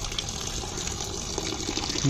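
A thin stream of water pouring steadily into a plastic basin already full of water.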